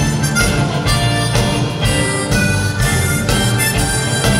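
A harmonica playing a melody into a microphone over band accompaniment with a steady beat.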